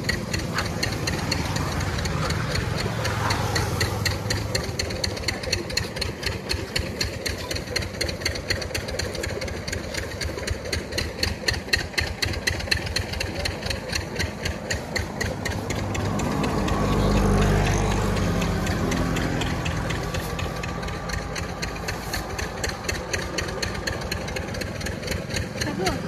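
Motor-vehicle traffic on the road: engine noise with a rapid, even knocking rhythm, and one vehicle passing close, louder and deeper, about seventeen seconds in.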